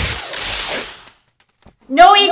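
A whooshing swish that swells once more and dies away within the first second, then a few faint ticks, as a crumpled paper ball flies through the air.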